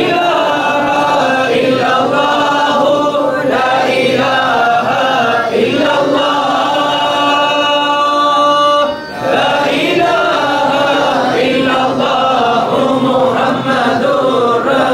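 Group of men chanting an Arabic devotional litany together in unison, with a long held note from about six to nine seconds in, then a brief pause before the chant goes on.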